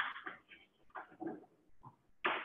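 Chalk writing on a blackboard: a few short, faint scrapes and taps with silent gaps between, heard through a Zoom call's narrow-band audio.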